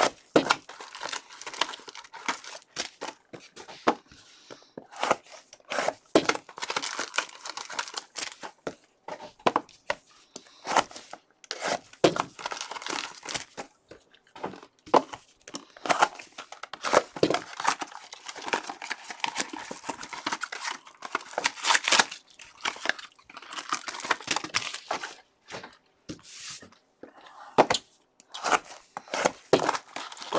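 Foil wrappers of 2017 Contenders Optic football card packs being torn open and crinkled by gloved hands, in irregular crackly bursts.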